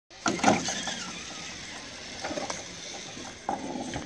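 Zipline trolley running along the steel cable as it approaches, a steady whir with a few sharp clicks and knocks, the loudest about half a second in.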